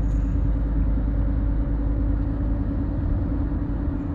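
Steady low rumble of a car on the move, heard from inside the cabin, with a constant droning hum over it.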